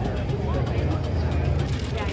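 Monster truck engine running with a steady low rumble as the truck drives across the dirt course, with people talking close by.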